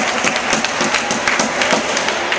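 Badminton hall din: many sharp, irregular taps and claps from shuttlecock strikes and hand-clapping, over a steady crowd murmur echoing in a large hall.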